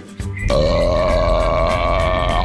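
A long, loud cartoon burp, starting about half a second in and held at a steady pitch, over background music.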